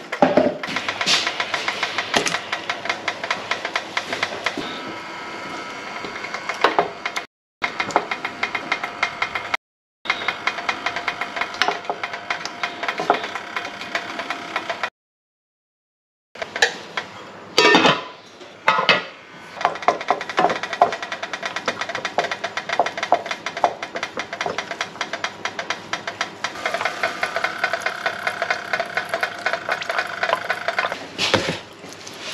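Water and lard heating in a non-stick saucepan on an electric hot plate, giving a dense run of quick ticks and crackles as it comes towards the boil. A wooden spatula knocks and stirs the lard cubes in the pan partway through.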